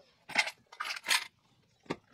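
Hard plastic clatter and rattles from the Isuzu D-Max's lower dash switch panel as a hand works behind it, with one sharp click near the end.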